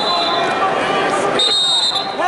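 Referee's whistle blown in a steady high blast starting about one and a half seconds in, with a fainter one at the start, stopping the wrestling so the wrestlers go back to the center. Crowd noise and voices of the arena run underneath.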